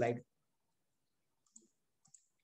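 The tail of a man's spoken word, then near silence broken by a single faint short click about one and a half seconds in.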